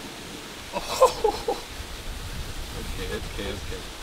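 A short voiced exclamation about a second in and fainter voices near the end, over a steady hiss of outdoor background noise.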